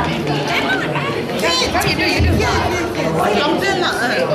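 Several women chattering over one another, with several voices overlapping throughout.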